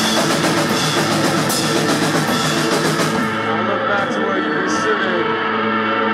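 Live noise-rock band playing: the drum kit pounds under a wash of cymbals for the first three seconds or so, over steady held guitar and bass tones, then the drumming thins to a few scattered hits.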